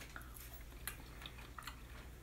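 Faint chewing of pasta and a few soft clicks of a metal fork as a child eats, over a low steady room hum.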